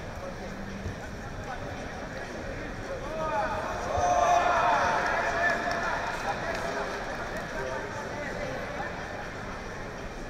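Arena crowd noise: many voices shouting over each other, swelling about three to four seconds in and easing off after a few seconds.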